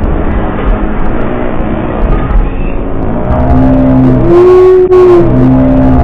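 Loud crowd noise with a horn blaring held notes over it: a lower note for about a second, a higher note held for about a second, then the lower note again.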